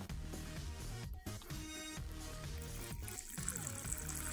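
Background music, with water trickling as a tarantula enclosure's small water dish is filled; the trickle grows louder near the end.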